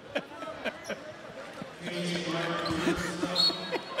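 A basketball bouncing on a hardwood court, sharp knocks in the first couple of seconds, over a steady arena crowd hum. A brief high squeak near the end is the loudest sound.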